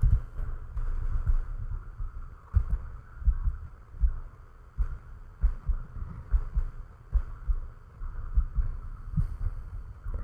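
Soft, irregular low thumps, several every second, over a faint steady hum.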